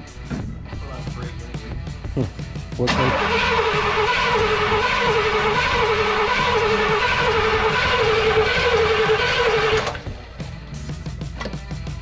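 Starter cranking the long-idle 1964 Pontiac LeMans V8 for about seven seconds, a steady run with a regular pulse a little under twice a second, then cutting off. It does not fire: the engine turns over but is not getting fuel.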